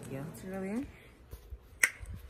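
A woman's voice finishing a word, then a single sharp finger snap near the end.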